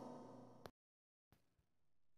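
Near silence: faint room tone with a small click about two thirds of a second in, then a stretch of dead silence at an edit before faint background noise returns.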